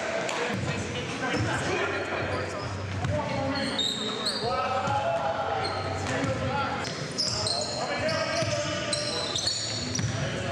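A basketball being dribbled on a gym floor amid players' voices.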